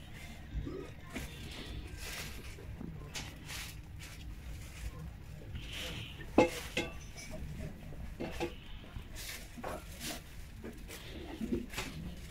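Indoor market ambience: a steady low hum with faint distant voices, scattered clicks, knocks and rustles, and one sharp knock a little past halfway.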